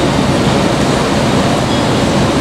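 Steady, loud rushing room noise of a large hall, with no words.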